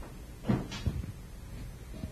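Handling noise from a microphone being passed back through the audience: a brief rustle about half a second in, then a few soft low knocks.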